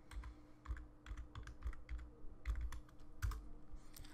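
Computer keyboard typing: a faint run of irregular keystroke clicks as a layer name is typed in.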